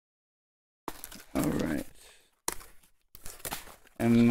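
Cardboard packing from a chair box being handled, with rustling and scraping that starts about a second in and comes in a few bursts. A short vocal sound from the person handling it comes about a second and a half in.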